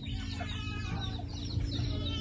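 Chickens clucking softly: many short, overlapping clucks from a mixed flock of hens.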